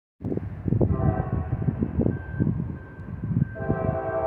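Diesel locomotive air horn on an approaching Norfolk Southern train: faint at first, then a loud, steady multi-note chord starting near the end. An uneven low rumble lies under it.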